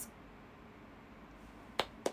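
Quiet room tone broken near the end by a single sharp click.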